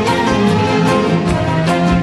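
An orchestra with a string section playing an instrumental passage of Arabic song, violins prominent over a steady beat.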